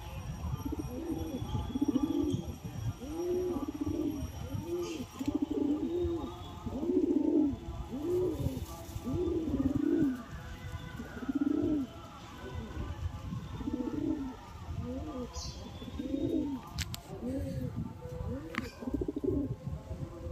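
Kalsira pigeon cooing over and over, a steady string of rising-and-falling coos about one a second. This is the puffed-up bowing coo of a male displaying to its mate.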